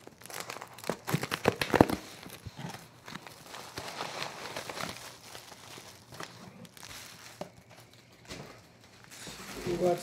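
Plastic wrap crinkling and tearing as a wrapped cardboard box is pulled open by hand, with sharp, loud crackles in the first two seconds, then lighter rustling of paper packing and a plastic bag.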